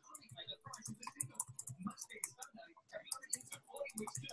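Typing on a computer keyboard: a quick, irregular run of key clicks, with indistinct voices in the background.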